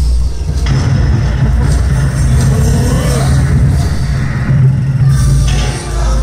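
Yosakoi dance music played loud over a festival music truck's loudspeakers, heavy in the bass.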